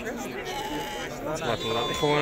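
Sheep bleating, a couple of held bleats, over the chatter of people talking among the flock.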